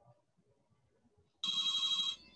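Near silence, then about a second and a half in an electronic ringing tone of several steady pitches starts abruptly and holds for about half a second.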